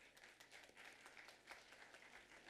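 Audience applauding, a faint, steady patter of many hands clapping.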